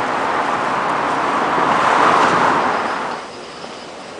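City street traffic noise that swells as a vehicle passes about two seconds in, then drops away suddenly after about three seconds.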